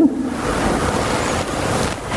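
A steady, even hiss of background noise, with no other distinct sound.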